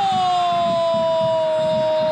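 Football commentator's long, drawn-out goal shout: one held vocal note that falls slightly in pitch and then holds steady.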